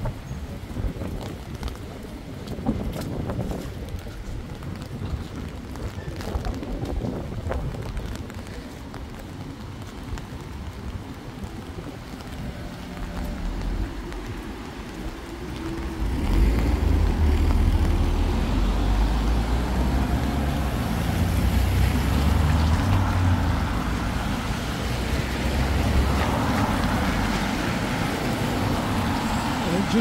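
Cars passing on a wet city street in steady rain, with scattered ticks of raindrops on an umbrella in the first half. About halfway through a heavy low rumble of wind buffeting the microphone comes in and stays.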